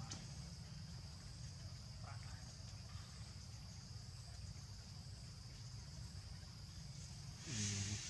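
Quiet outdoor background: a steady high-pitched insect drone over a low rumble, with one short vocal sound near the end.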